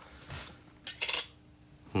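A 10-yen coin handled on a wooden table: light metallic clinks and rubbing, strongest about a second in.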